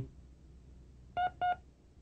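Two short electronic beeps about a quarter of a second apart, a signal tone recorded on a language-drill tape to cue the student.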